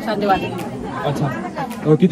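Speech only: a woman talking, with other voices chattering in the background.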